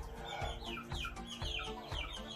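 Chickens clucking and calling in a rapid series of short calls, each falling in pitch.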